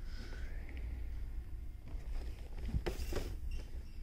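Store background noise: a steady low hum, with a brief rustle or clatter about three seconds in.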